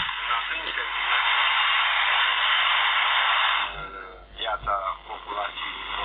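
FM receiver static hissing steadily from a phone speaker, as a LimeSDR Mini running QRadioLink sits tuned in wide FM mode. About three and a half seconds in, a broadcast station's voice breaks through, thin and noisy: the signal is weak.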